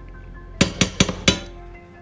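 Metal spoon tapped four times in quick succession against a copper-coloured frying pan, knocking a dollop of margarine off into the pan, over background music.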